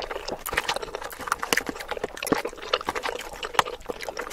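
Close-miked wet chewing and mouth sounds of a person eating, sped up to three times normal speed: a fast, continuous run of short smacks and clicks.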